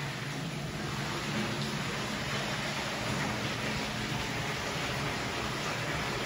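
Thermal brine water rushing steadily from the inlet into a deep stainless-steel bathtub and fizzing as it fills the tub, a 'champagne bath'.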